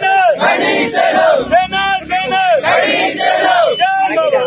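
A crowd of men shouting a slogan in unison, short rhythmic calls repeated about every two-thirds of a second.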